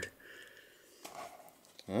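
Faint rustle of a plastic blister package being handled, about a second in, then a short spoken "huh" near the end.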